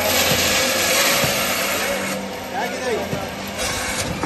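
Electric meat-and-bone bandsaw cutting through beef: a loud hiss as the blade goes through the meat for about two seconds, then the saw runs on more quietly with a steady motor hum.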